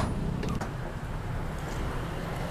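Road traffic: motorbikes passing with a steady low engine hum. A single sharp click comes right at the start.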